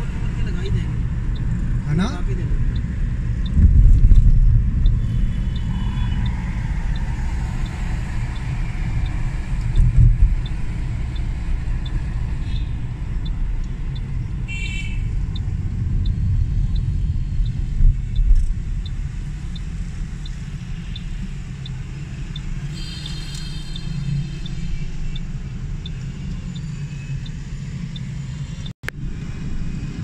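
In-cabin road noise of a car driving in city traffic: a steady low rumble of engine and tyres that swells briefly a few times, with a couple of short higher-pitched tones from the traffic partway through.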